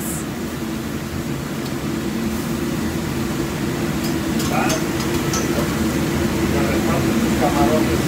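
Steady mechanical drone of a restaurant kitchen's running equipment, even and unchanging, with faint voices in the background about halfway through and near the end.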